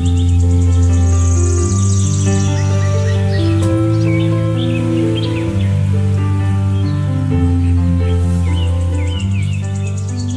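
Instrumental background music of long held notes over a steady bass, with bird chirps mixed in throughout.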